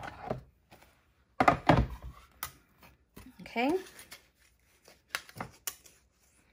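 Plates of a manual die-cutting machine being handled as the die-cut sandwich comes apart: a short run of knocks and clatters about a second and a half in, and a few sharp clicks near the end.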